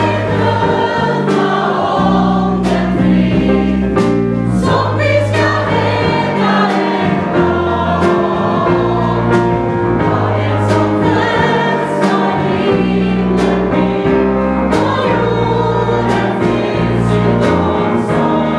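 Gospel choir singing, backed by piano, drums and bass, with bass notes changing every second or two and regular drum and cymbal strikes.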